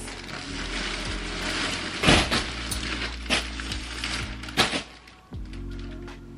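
Plastic poly mailer bag rustling and crinkling as it is handled and opened, with a few sharper crackles, the loudest about two seconds in. Background music plays underneath.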